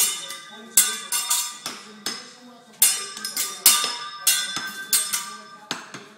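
Metal kitchen utensils struck in a quick, irregular series of clanks, about two a second, each ringing briefly.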